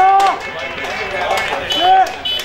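Two loud shouted calls from a spectator or player close to the microphone, one right at the start and one near the end, each rising and falling in pitch. Between them is the general noise of a suburban football ground.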